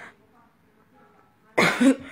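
A person coughing, two loud harsh bursts in quick succession near the end, over faint talk in the background.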